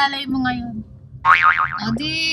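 A short, high, springy sound effect whose pitch wobbles up and down several times. It comes about a second in and lasts about half a second.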